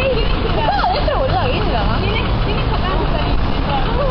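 Several people's voices chattering and exclaiming over one another, some rising high in pitch, over a steady low rumble.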